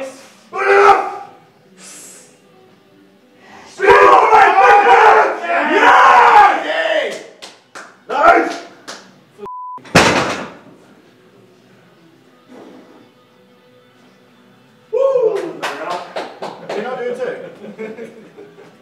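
Heavy deadlift of a barbell loaded to 450 kg with bumper plates: loud shouting through the pull, a short censor bleep, then the loaded bar dropped onto the platform with one heavy crash about ten seconds in. Near the end, more shouting with a run of sharp knocks.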